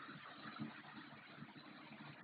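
Faint, steady background hiss with a low hum underneath: room tone, with no distinct event.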